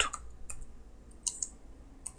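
A few scattered keystrokes on a computer keyboard, faint and spaced out.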